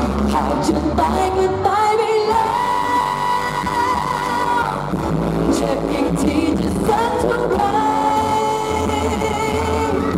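Live Thai pop band amplified through a PA: a female vocalist sings over bass guitar and drums, holding two long wavering notes.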